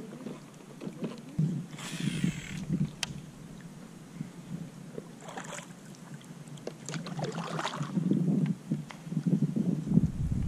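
Kayak paddle strokes: the blade dipping and splashing in the water in irregular bursts that grow louder near the end, with a couple of sharp clicks.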